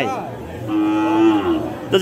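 A cow mooing once: a single steady, level-pitched call lasting about a second, starting about half a second in.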